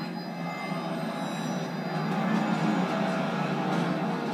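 Dramatic film score with a dense, steady wash of sound, played back through a TV's speakers so the deep bass is missing.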